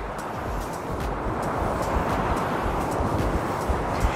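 Ocean surf breaking and washing over rocks, a steady rush that swells toward the middle and eases off, with wind rumbling on the microphone.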